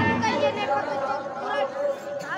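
Speech: voices talking amid chatter, fainter than the louder speech that follows.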